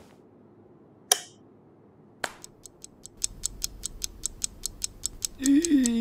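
A wall light switch clicks once about a second in. After that comes a run of quick, even mechanical clicks, about five a second, over a low hum. Near the end there is a short hummed voice sound.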